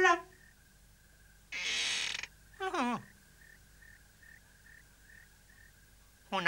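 Cartoon sound effect of a wooden door being opened: a brief rough scrape, then a short creak that slides down in pitch.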